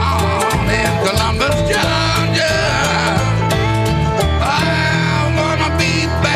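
Live country-blues band music with guitars over a continuous bass line, playing without a break.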